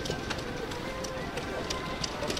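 Outdoor showground ambience: a background murmur of people talking, scattered sharp clicks and knocks, and faint music.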